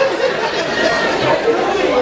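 Chatter: several people talking at once in a congregation.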